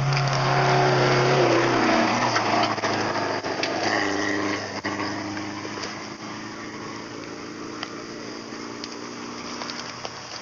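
A rally car's engine going by, loudest at first, its pitch dropping about two seconds in as it passes, then a fainter, steady engine note for the rest.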